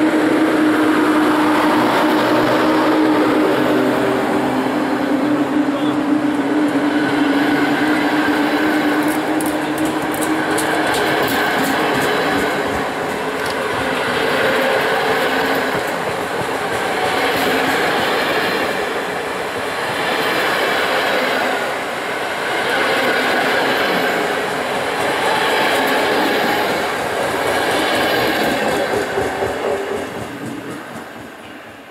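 EU07 electric locomotive departing and passing close by, with a steady low hum that fades over the first ten seconds or so. Its double-deck coaches then roll past, the rumble of wheels on rail swelling regularly about every three seconds.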